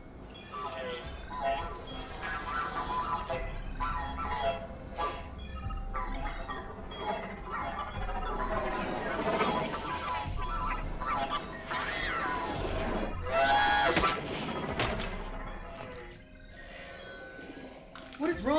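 Film soundtrack: music score with a low rumble underneath and a sharp hit about fifteen seconds in.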